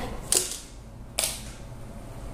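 Two short crackly rustles about a second apart, made by small items being handled and moved about in a handbag.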